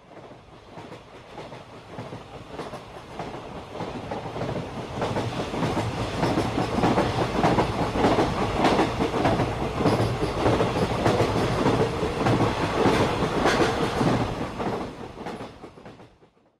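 Train sound effect: a running train with the clickety-clack of its wheels. It fades in over the first several seconds, holds, and fades out just before the end.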